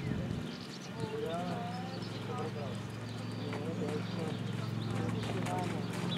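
Hoofbeats of a ridden horse moving on sand arena footing, with indistinct voices talking and a steady low hum underneath.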